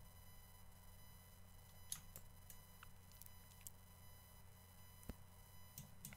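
Near silence: faint steady electrical hum of room tone, with a few faint clicks, about two seconds in and again after five seconds.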